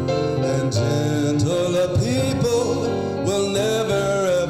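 A man singing a song live, with held, wavering notes, over instrumental accompaniment.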